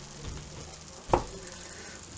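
A metal spatula cuts through a broccoli omelette and knocks once, sharply, against a non-stick frying pan about a second in. Under it is a faint steady sizzle from the pan, which is still on the heat.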